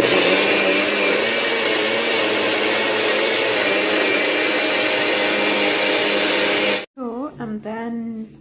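NutriBullet personal blender running, blending hydrated sea moss with a little water into gel: a loud, steady whir with a steady hum under it, which cuts off suddenly about seven seconds in.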